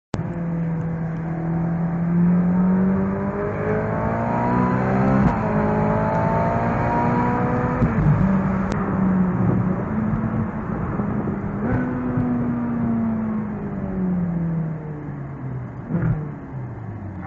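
Ferrari California's V8 engine heard from inside the cabin, pulling up through the gears: its pitch climbs, drops sharply at gear changes about five and eight seconds in, and rises again before falling away steadily as the car slows near the end.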